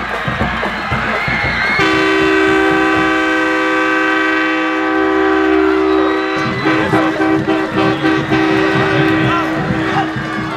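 A multi-tone air horn sounds one long, steady chord-like blast of about seven and a half seconds, starting about two seconds in and stopping near the end, over crowd noise. It marks a touchdown.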